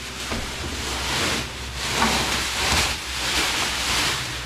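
Cardboard and plastic packaging being pulled and rubbed against a refrigerator during unboxing, a rustling, scraping noise that swells and fades several times.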